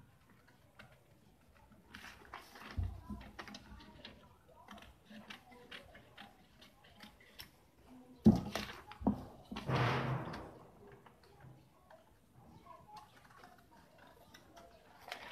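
Scissors cutting through a paper sewing pattern: a run of small snips and paper rustling, with a louder knock about eight seconds in and a longer rustle just after it.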